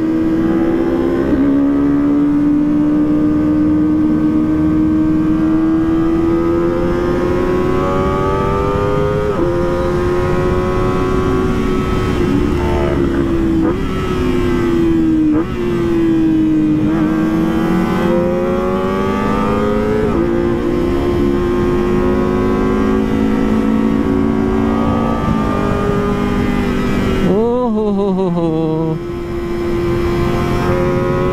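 Kawasaki ZX-25R's inline-four engine running at high revs under way. Its pitch holds and climbs, then drops sharply and rises again several times as gears are changed, with a deep dip and quick rise near the end.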